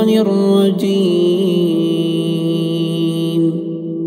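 A man's voice reciting the Qur'an in melodic tajweed style, with ornamented turns in the first second. It then holds one long steady note that fades out near the end, with a lingering reverberant tail.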